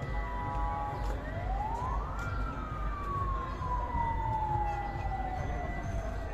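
A siren tone that rises quickly for about a second, then falls slowly and steadily over the next four seconds, over a busy outdoor background.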